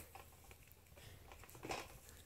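Near silence: room tone, with one brief faint rustle near the end.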